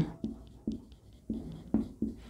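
Marker pen writing on a whiteboard: about four short, separate strokes.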